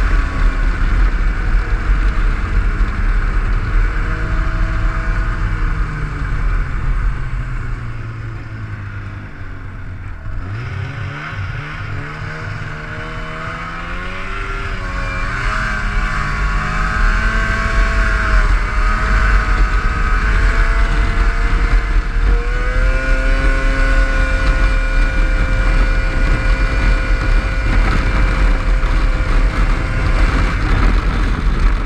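Snowmobile engine running under way. Its pitch drops as the sled slows until about ten seconds in, then climbs as it speeds up again and holds steady through the second half.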